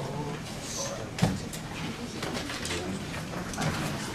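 Room noise from a seated audience in a meeting room: faint, indistinct voices and movement, with one sharp knock about a second in.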